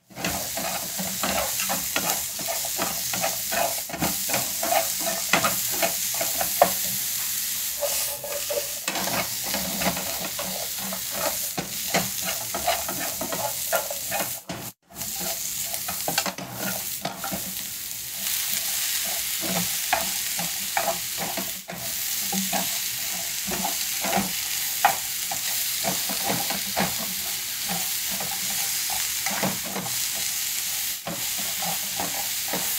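Vegetables sizzling steadily in a non-stick frying pan while being stir-fried, with wooden chopsticks repeatedly scraping and tapping against the pan. The sound cuts out for an instant about halfway through.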